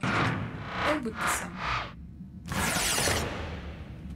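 Cartoon soundtrack: music and sci-fi sound effects, with a loud noisy rush of sound about two and a half seconds in that fades within a second.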